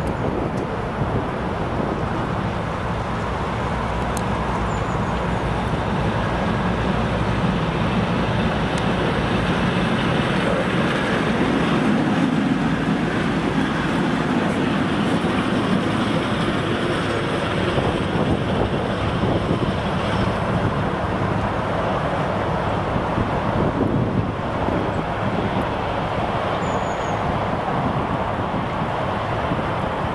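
VL11 two-section DC electric freight locomotive running light past at close range, its motors and wheels making a steady rumble on the rails. The sound swells to its loudest around the middle as it passes.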